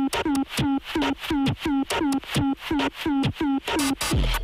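Techno in a DJ mix: a tightly repeating loop of short synth hits, each falling quickly in pitch, at about three to four hits a second.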